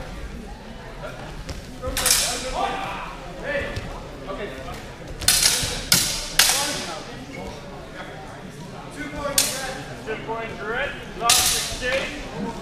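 Sword blades clashing in a HEMA bout: about six sharp strikes that ring on briefly, one about two seconds in, three in quick succession around the middle, and two more near the end.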